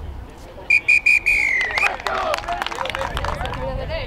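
Referee's whistle blown three short times and then once longer, the long blast sagging slightly in pitch: the full-time whistle ending a rugby match. Shouts and voices from players and onlookers follow.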